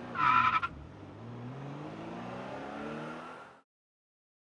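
Car tyres squealing briefly, then a car engine revving up with rising pitch for about three seconds before cutting off abruptly.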